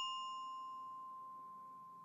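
A bell-kit (glockenspiel) bar, the note C, ringing on after one light mallet tap and slowly dying away. The brighter overtones fade within about a second, leaving a single clear, pure tone.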